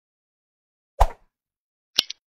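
Logo-animation sound effects: a short low pop about a second in, then a brief high click near the end.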